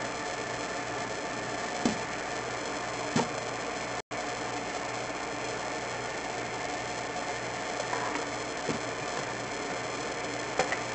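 Steady electrical hiss and hum from a pipe inspection camera's recording system, with a few short knocks. The sound cuts out for an instant about four seconds in.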